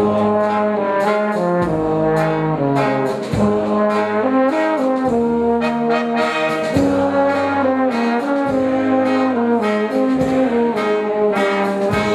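Brass band with tuba, trumpets and clarinet playing a tune, the tuba carrying the bass line and drums keeping a steady beat.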